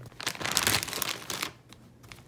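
Plastic zip-top bag crinkling as it is handled and set down into a bin, the rustling dying away about one and a half seconds in.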